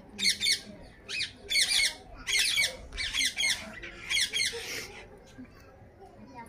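Ringneck parakeets giving a harsh, rapid chatter of calls in about six bursts that stop about five seconds in, during beak-to-beak courtship feeding between a male Alexandrine parakeet and a female yellow Indian ringneck.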